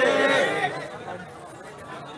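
A man's voice through a microphone ends a drawn-out phrase, its pitch rising and falling, about half a second in; then only a low murmur of crowd chatter is left.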